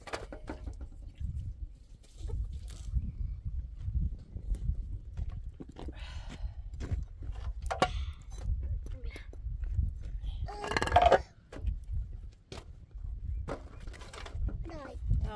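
Wind rumbling on the microphone with a few light knocks, and one loud, wavering bleat from a goat or sheep about eleven seconds in.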